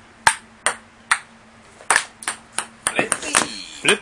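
Table tennis rally: a celluloid ball clicking sharply off paddles and the wooden table, about ten hits at a quick, uneven pace. A voice calls out near the end.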